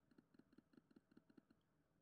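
Faint, rapid clicking from the M1 MacBook Air's Force Touch trackpad: about a dozen quick clicks, some in close pairs, over the first second and a half, then they stop.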